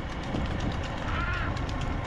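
Steady rumble and rattle of a racing bullock cart, its wooden bed and wheels clattering on a paved lane as the bulls run, heard from close behind. A brief rising-and-falling call cuts through about a second in.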